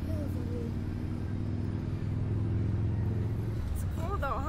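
A steady low droning hum, engine-like, that fades out shortly before the end.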